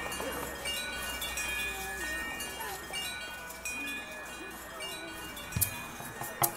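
Chimes tinkling: many short, high ringing notes scattered throughout, over faint murmuring voices, with a single sharp knock near the end.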